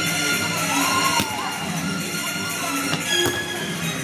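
Music playing, with two sharp thuds about two seconds apart: judoka being thrown and slapping down onto the tatami mats.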